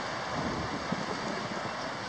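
Steady road-traffic noise with wind buffeting the microphone.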